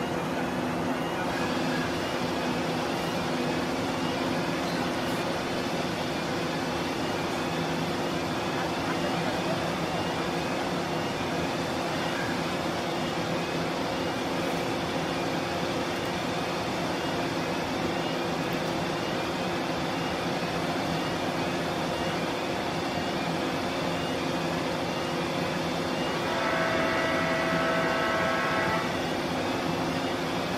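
Steady drone of the ferry Salish Orca's engines and propulsion as it pulls away from the berth, with the rush of churning wake water and a faint chirp repeating about once a second. Near the end, a steady pitched tone with overtones sounds for about two and a half seconds.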